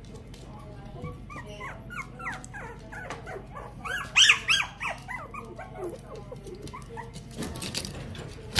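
Several young puppies whimpering and yelping together, a run of short, high, rising-and-falling calls that peaks about four seconds in.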